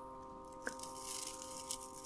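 Dry loose tea leaves rustling and crunching softly as they are tipped into a teacup, with a couple of light clicks.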